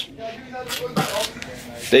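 Soft rustling and handling noises as a foot is worked on, with quiet voices in the background and a single sharp tap about a second in.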